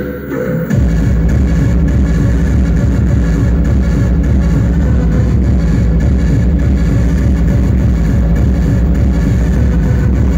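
Hard techno DJ set played loud over a club sound system, recorded on the dance floor. After a breakdown, the kick drum and full beat come back in about a second in and run on as a steady, driving beat.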